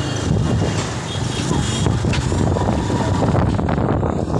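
Loud, steady outdoor background noise: a low rumble with indistinct voices in it.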